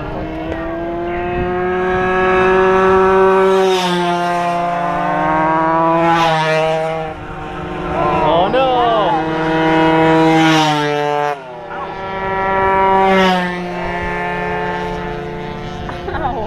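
Several racing mopeds' small engines running flat out, each steady note swelling and then dropping in pitch as a machine passes, loudest about 3, 6, 10 and 13 seconds in.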